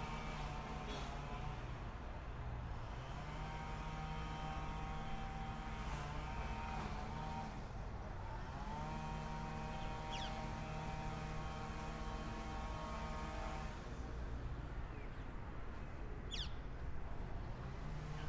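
A motor vehicle's engine running at a steady, even pitch in two long stretches, with a short break about seven or eight seconds in. Two brief high chirps fall in pitch, one near the middle and one near the end.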